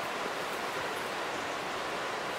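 Steady, even rushing of running water from a stream.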